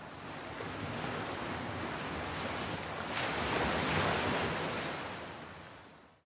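Ocean surf washing on a shore. The wash swells to its loudest about three to four seconds in, then fades out.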